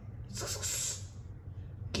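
A short breathy hiss of air, starting about a third of a second in and lasting under a second.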